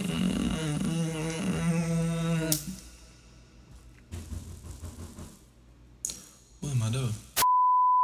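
A voice singing and holding a note for the first couple of seconds, then quiet. Near the end a single steady high beep starts: the test-pattern tone that goes with television colour bars.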